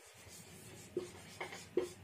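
Felt-tip marker writing on a whiteboard: faint strokes, with three short distinct ones in the second half as the letters of "ng/ml" are written.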